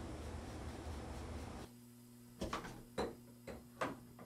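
Hard plastic knocks and clicks as a PVC condensate-neutralizer housing and its union fittings are handled and fitted into the drain line: four sharp knocks in the second half, over a faint steady hum. The first couple of seconds hold only a steady low noise.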